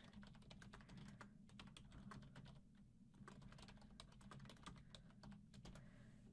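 Computer keyboard typing: faint, quick, irregular keystrokes with a short pause about halfway through.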